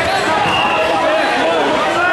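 Crowd of many voices talking and shouting over one another, with a few dull thumps.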